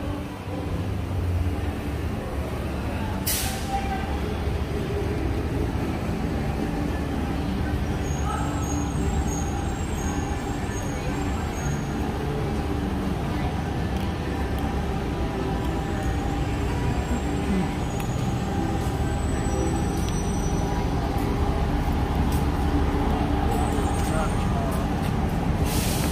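Steady street traffic rumble with people talking nearby. A short sharp hiss comes about three seconds in and another near the end.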